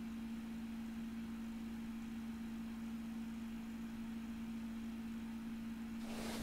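Room tone: a steady low hum with faint hiss, unchanging throughout.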